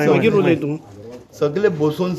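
A man's voice speaking in Konkani in short phrases, with a brief pause about a second in.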